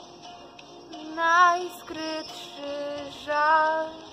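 A young woman singing over a quiet backing track: two loud held notes with vibrato, about a second in and again near the end, with softer notes between them.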